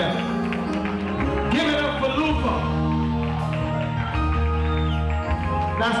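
Reggae backing music playing steadily with a heavy bass line, and a man starting to speak over it at the very end.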